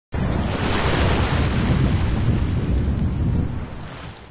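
Steady rushing noise, heaviest in the low end, that starts suddenly and fades out near the end.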